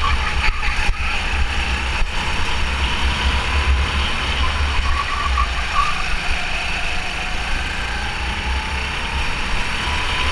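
Go-kart engine running steadily under racing load, heard from a camera mounted on the kart. Its level dips a little in the second half and picks up again near the end.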